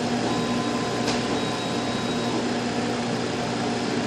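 Laser engraver's ventilation and air-assist fans running steadily: an even whirring noise with a low hum under it, and one brief tick about a second in.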